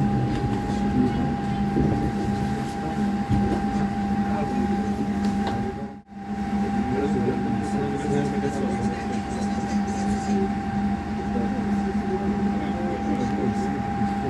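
Steady high whine over a low hum inside a city bus passenger compartment, with a brief dropout about six seconds in.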